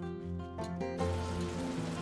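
Background music with steady held notes, over a faint hiss of sugar syrup and pecans cooking in a cast-iron skillet. The hiss drops out for about the first second, then returns.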